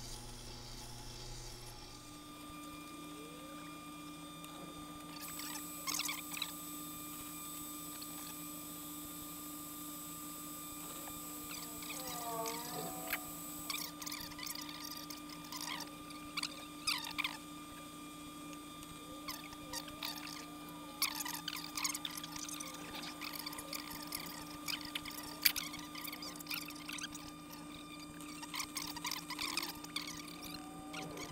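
Water-cooled grinding wheel running with a steady motor hum, while a chisel held in a jig grinds against the wet stone, giving irregular short scrapes and chirps as it is slid back and forth across the wheel.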